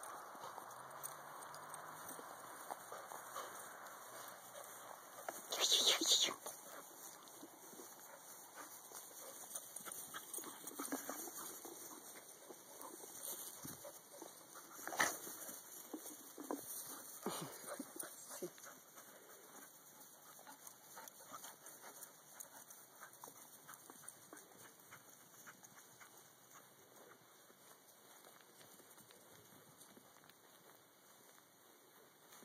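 A dog gives a short, high-pitched bark about six seconds in, with a few shorter, fainter sounds later, over faint rustling of dogs and feet moving through dry grass.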